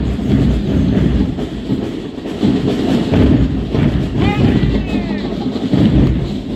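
Marching band drumline playing a street cadence under a heavy low rumble, with a short pitched, rising-and-falling cry about four seconds in.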